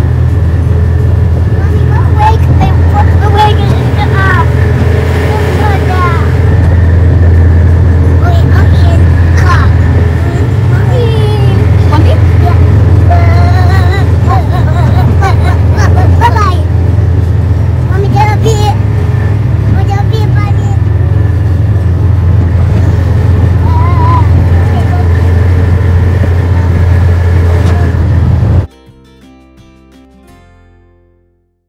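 Farm vehicle's engine running steadily while carrying passengers in its open cargo bed, with young children's babbling voices over it. The engine sound cuts off abruptly near the end.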